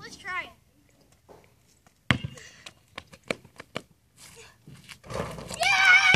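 Basketball bouncing on a concrete driveway: one hard bounce about two seconds in, then several quicker bounces. Near the end a child's loud, high-pitched shout.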